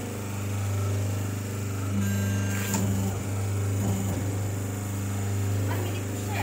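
Electric motor of a semi-automatic hydraulic paper plate making machine humming steadily. A higher tone joins in about two seconds in and again near four seconds, with a sharp click just before the three-second mark.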